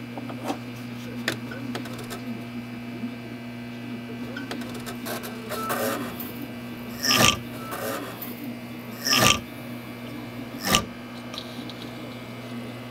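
A desktop computer running, its fans and power supply giving a steady hum. In the second half, three short, loud noises come about one and a half to two seconds apart.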